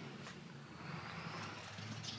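Faint steady background noise with a faint tick about a quarter second in; no clear sound from the jumping dog or the rope toy stands out.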